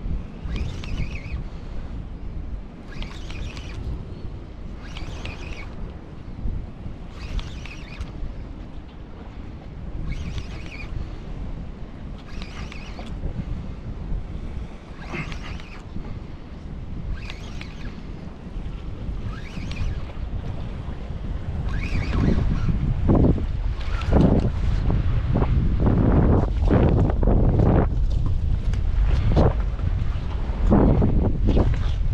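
Wind buffeting the microphone with a steady low rumble, over small waves washing against the jetty rocks. The wind gusts harder and louder about two-thirds of the way through.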